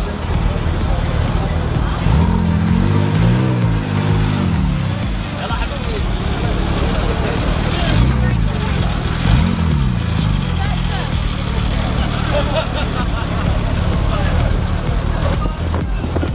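Porsche 911 Turbo S twin-turbo flat-six idling and being revved, the engine note rising and falling in a few quick blips about two to four seconds in and again around eight to ten seconds in. Background music and crowd chatter run underneath.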